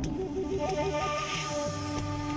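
Background music: held low notes under a short stepping melody.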